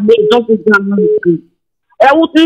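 Speech only: a person talking, breaking off about one and a half seconds in for a short silence.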